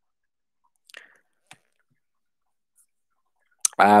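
Near silence, broken by a faint short sound about a second in and a soft click half a second later; a man's voice starts speaking near the end.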